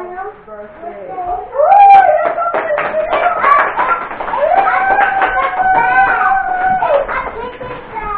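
People singing together with hand-clapping; a long note is held for a couple of seconds toward the end.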